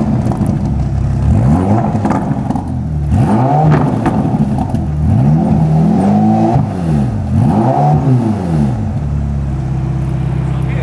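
Ferrari Portofino M's twin-turbo V8, freshly started, revved in a string of throttle blips, each a rise and fall in pitch. It settles into a steady idle near the end.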